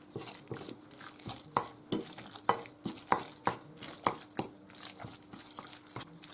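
Fork stirring and mashing a thick tuna mixture in a glass bowl, clinking and scraping against the glass in irregular strokes about twice a second.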